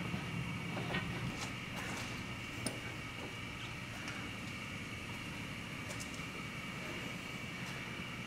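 A steady mechanical hum in a workshop, like a running fan or air unit, with a few faint metallic clicks in the first three seconds.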